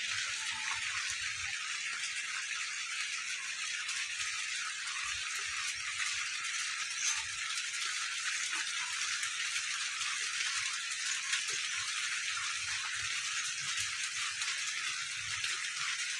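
Steady rain falling: an even hiss with many fine taps of drops.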